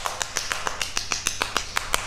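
A man clapping his hands: a quick, slightly uneven run of sharp claps.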